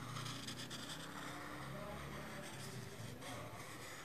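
Quiet: a felt-tip whiteboard marker faintly drawing on paper as it traces a numeral, over a low background hum.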